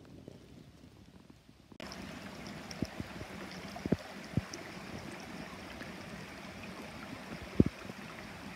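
Near silence at first, then, a couple of seconds in, a sudden change to a shallow rocky creek flowing steadily. A few soft low thumps come over the water sound, the loudest near the end.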